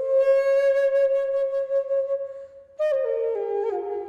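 Background music: a flute holds one long note, then after a brief break plays a short run of notes stepping downward.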